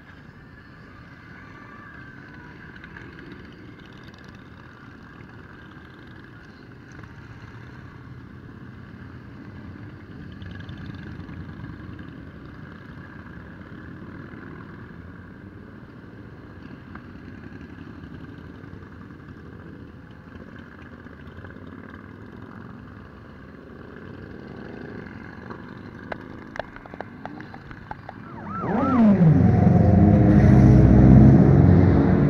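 Group of motorcycles riding past, their engines running at a moderate level with occasional rising revs. Near the end a much louder engine comes in suddenly, its pitch rising.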